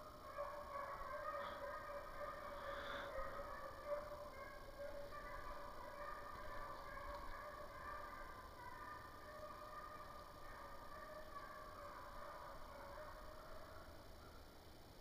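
Faint, continuous baying of Walker hounds on a running deer trail, several voices overlapping, fading near the end.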